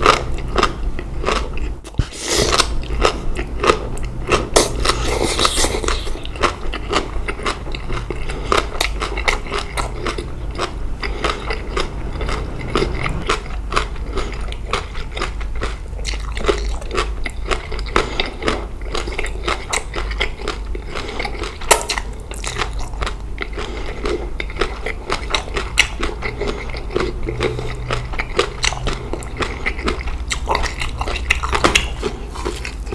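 Close-miked chewing of spicy green papaya salad with rice noodles: a dense, continuous run of wet, crisp crunching bites.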